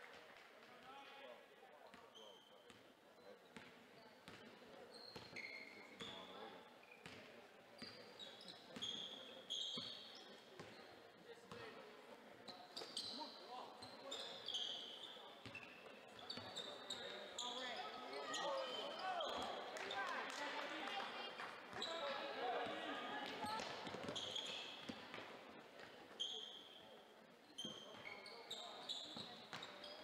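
Basketball being played on a hardwood gym floor: a ball bouncing and sneakers squeaking in short high chirps. Background voices from the benches and stands grow louder in the second half.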